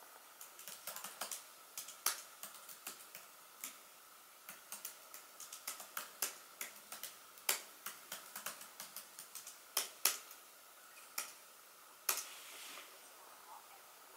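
Typing on a laptop's chiclet keyboard: a quick, irregular run of key clicks with a few louder strikes, stopping near the end.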